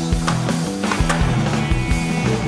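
Rock music with a steady drum beat and a held bass line.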